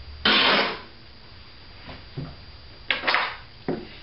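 Cotton fabric being ripped by hand along its weave: a loud half-second rip just after the start, then two shorter rips near the end.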